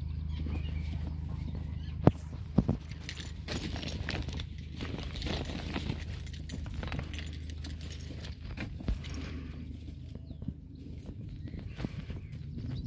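Footsteps on a grassy canal towpath over a low steady engine hum from a moored narrowboat, the hum fading in the second half as the boat is left behind. Two sharp clicks, the loudest sounds, come about two seconds in.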